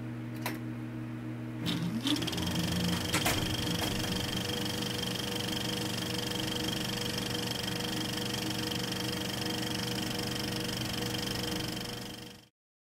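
A small motorised machine hums steadily, then starts up about two seconds in with a few clicks and a short rising whine. It settles into an even mechanical whir with a thin high tone, and cuts off abruptly at the end.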